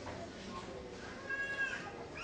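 A faint, high-pitched vocal call lasting about half a second near the end, its pitch rising and then falling, over low room noise.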